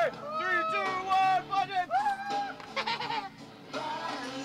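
Excited human yells and whoops as a bungy jumper leaps and falls: several short shouts rising and falling in pitch, with one longer held yell about halfway through.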